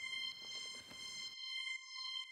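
A faint high synth string note from a Roland JV-1010 sound module, held at one steady pitch, with a few soft clicks.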